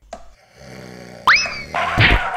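Cartoon sound effects: a low drone, then a loud whistle-like boing that shoots up in pitch and slowly sinks, followed by a burst of rushing noise.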